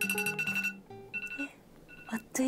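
Smartphone alarm beeping in rapid high pulses, twice, marking the end of a 20-minute study session, while acoustic guitar background music ends within the first second.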